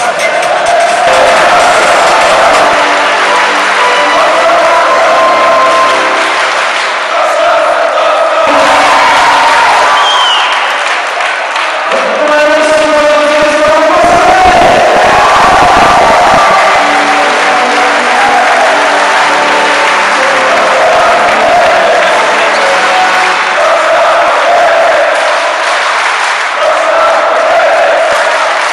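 A group of women singing and chanting a victory song together in a large sports hall, with clapping and cheering mixed in.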